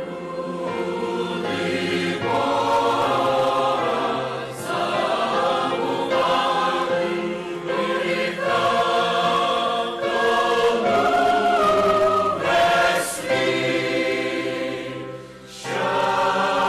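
A large mixed choir of men's and women's voices singing a Christmas choral song, phrase after phrase, with brief dips between phrases and a short pause just before the end.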